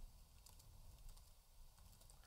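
Faint computer keyboard typing: a few soft, scattered keystrokes as a short line of code is typed.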